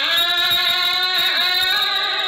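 A woman's solo voice chanting smot, Khmer Buddhist sung poetry, into a microphone: one long, wavering held note that dips in pitch about a second and a half in and then carries on.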